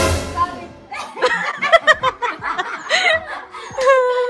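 A group of people laughing together, with snickers and chuckles mixed with bits of talk. A sudden noisy burst comes right at the start.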